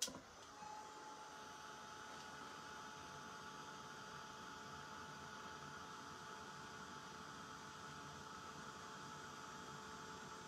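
Handheld craft heat gun switched on at the start and running steadily, a faint fan-motor hum with a thin steady whine, used to dry wet paint on the project.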